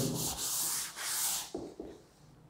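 A chalkboard eraser wiping chalk off a blackboard in two long rasping strokes, the second shorter.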